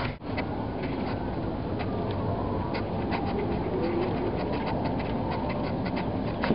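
Small clicks and knocks of hands fitting the small coolant hoses onto a car radiator, over a steady outdoor background rumble. A dove coos faintly about four seconds in.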